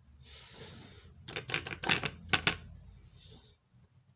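A brief rustle, then a quick run of about eight sharp clicks or taps of small hard objects being handled, close to the microphone, followed by a faint rustle.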